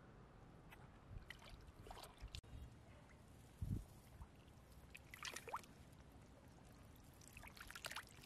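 Faint splashing and sloshing of shallow muddy water as hands feel along the bottom of a ditch and lift a large mud-covered mussel, with a dull thump a little past the halfway point and a short run of splashes after it.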